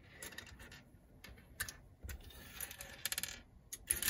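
Small plastic LEGO minifigure parts clicking lightly against each other and the tabletop as hands sort through a loose pile: scattered faint clicks, with a quick run of them about three seconds in.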